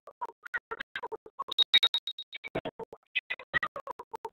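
Garbled, choppy audio from a participant's web-conference microphone feed, breaking up into rapid fragments with gaps between them: a faulty connection on which the sound is not coming through properly.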